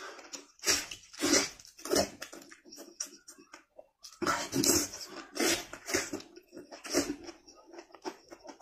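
Close-up eating noises of a man biting and sucking meat off a cooked animal head by hand, in a series of loud bursts with a brief silence about four seconds in.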